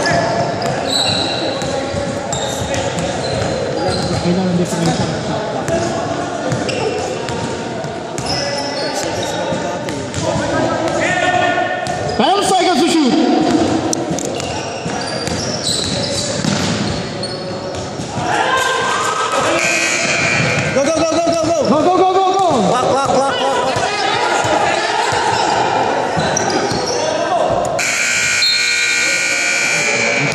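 Basketball game in a reverberant gymnasium: a ball bouncing on the hardwood floor and players calling out. About two seconds before the end, the scoreboard buzzer sounds a steady tone as the game clock runs out.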